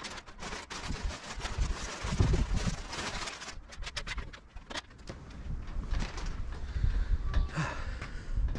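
Plastic wrapping on a foam mattress rustling and crinkling as the mattress is shoved up onto a high bunk, with dull thumps and knocks from an aluminium stepladder as someone climbs down it in the second half.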